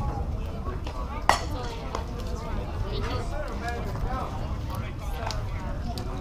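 A softball pitch pops once, sharply, into the catcher's leather mitt a little over a second in. Indistinct voices of players and spectators chatter throughout.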